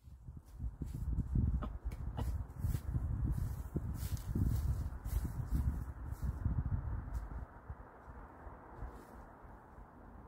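Irregular low rumbling with a couple of sharp knocks as a heavy plywood board is lifted and shifted against the wooden sides of a compost bin. The rumbling dies down about three quarters of the way through.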